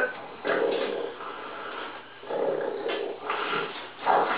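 Straining grunts and groans from men locked in an arm-wrestling match, in two drawn-out stretches of about a second each.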